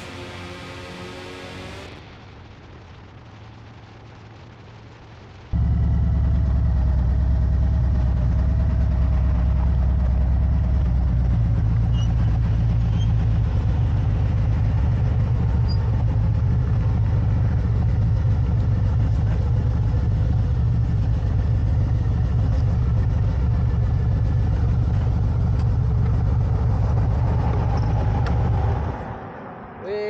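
Motorcycle engine running close by with a steady, loud low rumble, cutting in suddenly about five seconds in and dying away just before the end. A little music plays at the very start.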